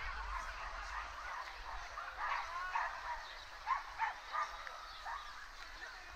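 Gulls calling: a series of short, arching calls, loudest in a cluster about four seconds in.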